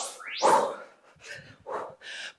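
A woman's short, breathy exhales as she does high-impact skater jumps, several puffs in quick succession.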